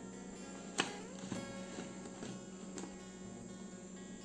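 Quiet background guitar music, with two light clicks about a second in and near three seconds as the plastic lid of a personal blender cup is twisted off.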